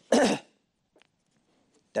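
A man clearing his throat once: a short, loud burst of under half a second.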